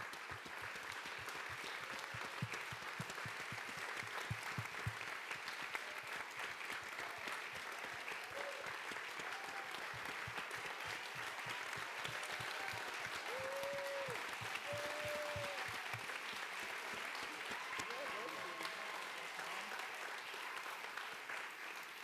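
Audience applause: steady clapping from a crowd for about twenty seconds, with a few short voices calling out over it in the middle, fading out near the end.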